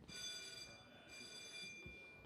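Faint, high, steady ringing tones like a chime or bell. They sound twice, with a short break about halfway through.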